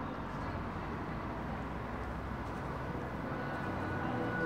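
Street traffic noise, a steady low rumble that slowly grows louder as a car passes. Near the end a high held note of music comes in over it.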